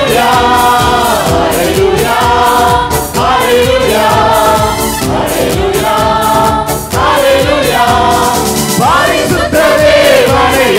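Mixed choir of men and women singing a Tamil Christian worship song into microphones, in long held phrases over a steady beat of band accompaniment.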